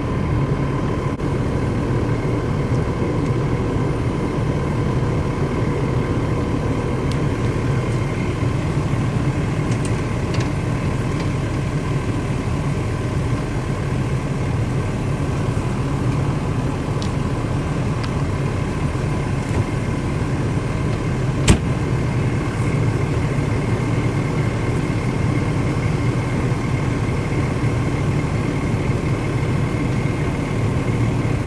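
Fire truck engine running steadily at idle, a low drone with a faint steady whine above it. A single sharp knock comes about two-thirds of the way through.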